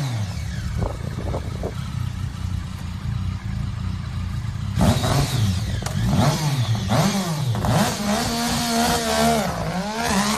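Sport motorcycle engine revved hard over and over, its pitch swooping up and down about once a second. Between about one and five seconds in it settles to a lower, steadier note before the revving picks up again.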